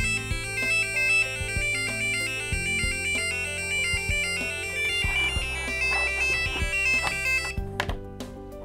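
EDU:BIT board's piezo buzzer playing a beeping electronic melody, a quick run of stepped notes, which stops suddenly near the end. The tune is the traffic light's crossing signal, telling pedestrians to go while the light is red for cars.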